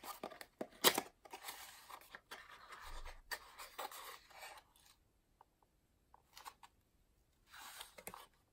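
A small box being opened by hand: rustling, scraping and clicking of the box and its packaging, with a sharp snap about a second in. The handling dies down about five seconds in to a few faint ticks.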